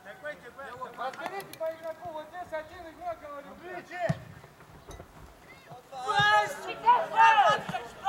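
Footballers calling and shouting to each other during play on an open pitch. The voices get louder and higher-pitched in the last couple of seconds. There is a single sharp thud about halfway through.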